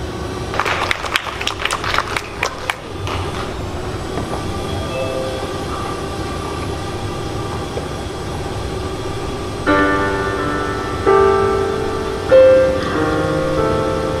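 Brief scattered clapping, then a quiet stretch of room hum. About ten seconds in, a piano begins playing slow, separate chords.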